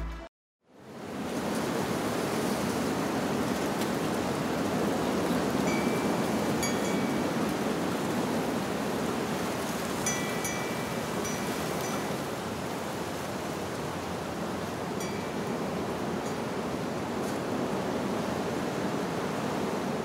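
Steady rushing noise, like surf, with a few faint chime tones ringing about six, ten and fifteen seconds in.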